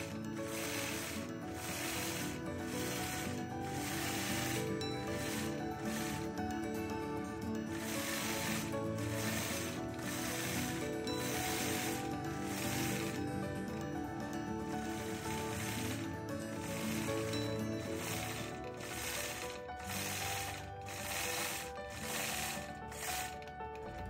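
Longarm quilting machine stitching, its needle mechanism clattering steadily as it runs across the quilt.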